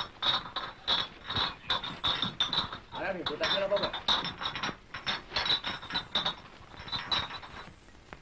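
Film soundtrack: a man's voice speaking a short line of dialogue, over a quick, irregular run of clicking or knocking sounds, several a second.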